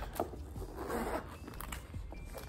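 Metal zipper on a black leather crossbody bag sliding with a rasping scrape for under a second, with a few light handling clicks around it.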